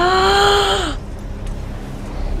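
A woman's long, drawn-out "ooh" of amazement, held for about a second and dropping in pitch as it ends, over a steady low rumble from a film soundtrack.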